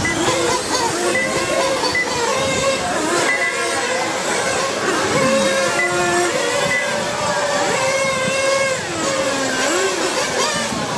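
Several R/C motorcycles racing together, their motors whining in overlapping tones that rise and fall in pitch as they speed up and slow through the corners.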